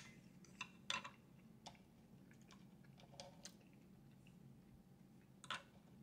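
Quiet chewing of a soft taco: a few faint wet mouth clicks and smacks scattered through, over a low steady hum.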